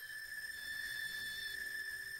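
Novation Supernova II synthesizer holding a single steady high-pitched electronic tone with a thin ladder of overtones, a faint lower tone joining it about a second in.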